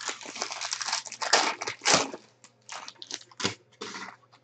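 Foil trading-card pack being torn open and crinkled: a dense crackle for about the first two seconds, then scattered short crinkles and clicks.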